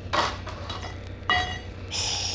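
Record sound effect of a spaceship airlock opening: a short rush of noise, then a metallic clang about a second in that rings on with several tones, over a steady low hum from the old recording.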